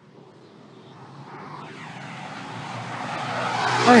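Street traffic noise swelling steadily as a car approaches and passes close by, with a man's startled "Ay!" near the end.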